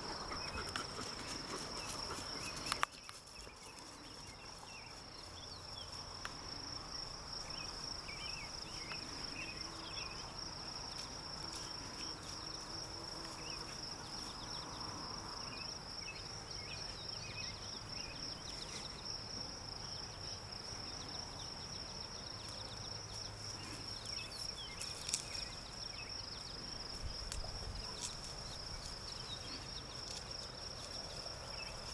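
Insects chirring steadily at a high pitch, with one sharp knock about three seconds in.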